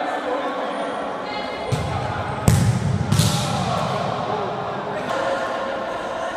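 Futsal ball struck on a hard indoor court, with a sharp kick about two and a half seconds in and another just after, echoing in the sports hall.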